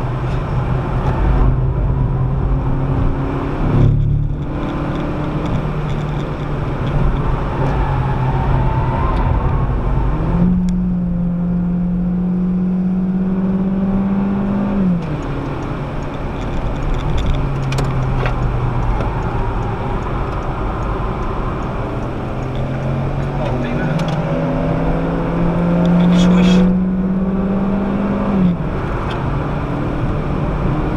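Citroën DS3's 1.6-litre petrol four-cylinder engine heard from inside the cabin at speed, over steady road and tyre noise. Twice the four-speed automatic kicks down: the engine note jumps higher, climbs for a few seconds under load, then falls suddenly as the gearbox shifts back up.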